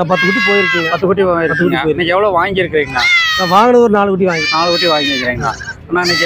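Goat kids bleating from wire pens, mixed with a man talking.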